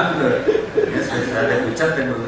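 A man's voice over a handheld microphone, mixed with chuckling laughter.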